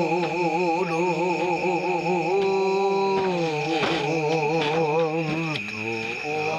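A man chanting in long held notes with a heavy, wavering vibrato, a Mentawai shaman's ritual chant, breaking briefly near the end before starting a new phrase. A steady high insect drone sounds behind the voice.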